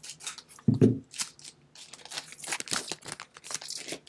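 A foil trading-card booster pack being torn open and crinkled: a run of crisp, crackling tears and rustles. A short voice sound comes about a second in.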